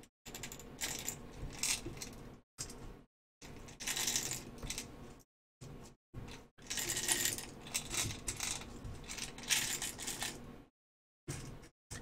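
Small lead fishing-weight shot rattling and clinking as it is tipped from a round container into the compartments of a 3D-printed plastic base and pushed into place by hand. It comes in several short spells of clattering with brief pauses between.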